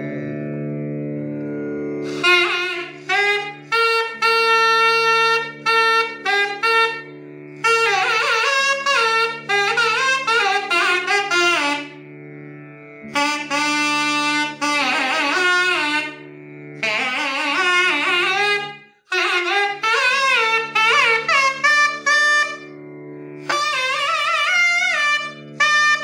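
Nadaswaram playing ornamented Carnatic phrases in raga Suddhadhanyasi, its notes sliding and bending, in lines broken by short breathing gaps. A steady drone sounds under it throughout and is heard alone for the first two seconds.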